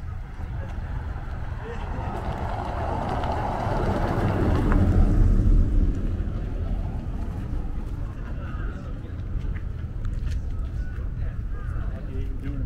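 An SUV driving past at low speed, its engine and tyre noise swelling to a peak about four to five seconds in and then fading away, over a steady low rumble.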